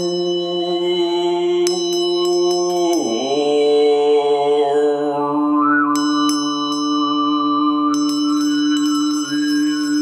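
Male overtone singing: a steady low drone with a whistling overtone melody moving above it, the drone dropping in pitch about three seconds in. A small brass hand bell is struck in short flurries, near two, six and eight seconds in, and left ringing.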